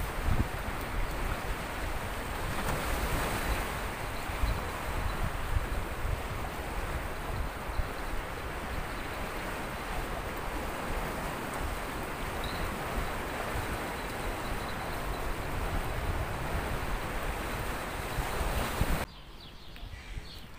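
Wind blowing on the microphone, a steady rushing with gusty low buffeting, over the wash of sea waves. It drops away suddenly near the end.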